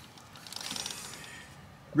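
Faint whir of a Harley-Davidson Pan America's worn rear drive chain running over the rear sprocket as the rear wheel is turned slowly.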